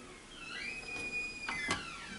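Microwave oven keypad beeping as the Baked Potato button is pressed twice: one long high beep, then button clicks with a second, shorter beep.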